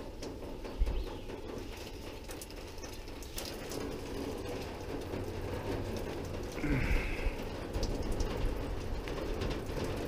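Water pattering from a hose-fed outdoor camp shower head, with a fault in the supply hose not yet found. A low thump about a second in and a brief falling sound about seven seconds in.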